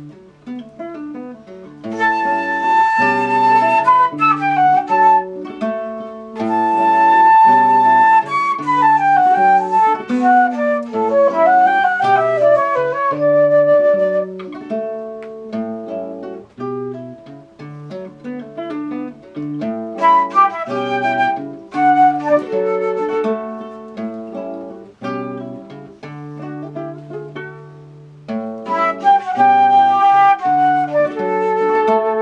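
Nylon-string acoustic guitar and a woodwind playing a guajira together. The guitar plays throughout, and the woodwind comes in about two seconds in with an ornamented melody full of slides, dropping out for stretches and returning near the end.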